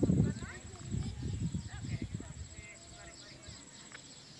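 Wind rumbling on the microphone, stopping about a third of a second in, then faint distant voices of onlookers for about two seconds, over a quiet open-air background with high insect chirping and a steady high whine.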